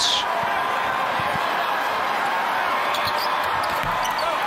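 Steady arena crowd noise, with a basketball bouncing a few times on the hardwood as the shooter dribbles at the free-throw line.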